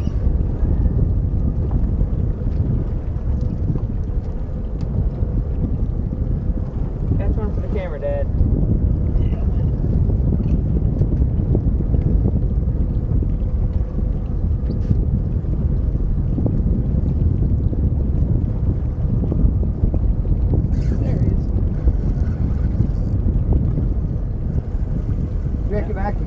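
Wind rumbling on the microphone over water washing against a small boat's hull, with a faint steady hum underneath.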